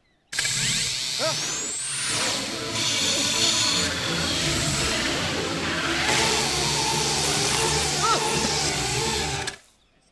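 Small electric shaver motor buzzing under an advert's music bed, with rising whistle-like sound effects in the first two seconds. A man gives a short "Ah!" about eight seconds in, and everything cuts off just before the end.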